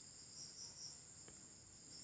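Near silence: room tone with a faint, steady high-pitched whine.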